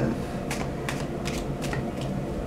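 Tarot cards being shuffled and handled by hand: a handful of sharp, irregular clicks over a low steady hum.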